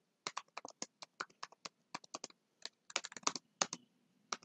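Computer keyboard typing: a quick, irregular run of keystrokes, with a denser flurry about three seconds in.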